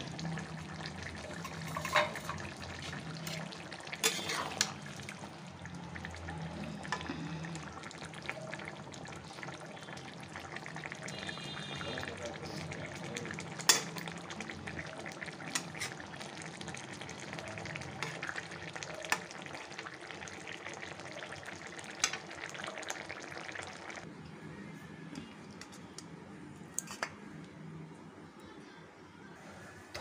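Jackfruit curry simmering and sizzling in a steel kadai on low heat, with a steel spatula stirring and scraping against the pan in scattered clicks, over a steady low hum.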